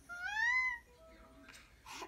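Baby's single high-pitched coo, rising then falling in pitch, lasting under a second.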